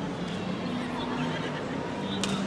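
Crowd hubbub in a large shopping mall hall: many people talking at once, with a faint high wavering sound during the first second or so.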